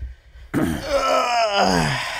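A man's drawn-out groan, starting about half a second in and falling in pitch over about a second and a half.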